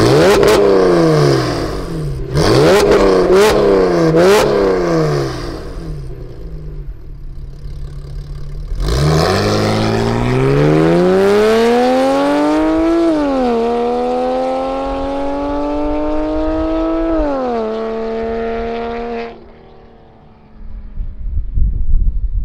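Porsche 996.2's 3.6-litre flat-six with an aftermarket Kreissieg exhaust, very loud. It is revved in quick blips while stationary, with sharp pops between the blips. After a short lull it pulls away and rises in pitch through two upshifts, then fades as it drives off, and a burst of low noise follows near the end.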